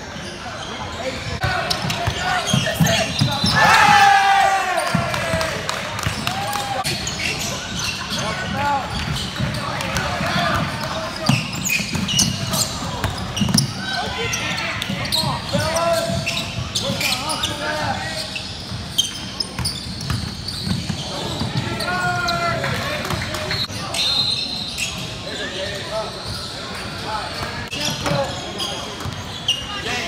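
Basketball bouncing on a hardwood gym floor during play, with voices calling and shouting in the hall, the loudest shout about four seconds in.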